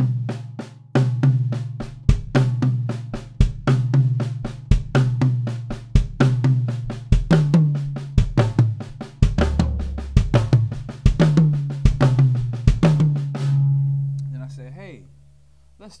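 Tama drum kit played in a fast, continuous linear pattern of hand strokes with a bass-drum kick placed between the right and left hands, a figure in odd time. The drums ring under the strokes, and the playing stops about 14 s in and rings out.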